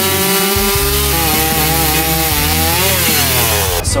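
Gasoline two-stroke chainsaw cutting through a log, running at high revs with its pitch wavering as the chain bites into the wood. The pitch falls away late on, and the sound stops abruptly just before the end.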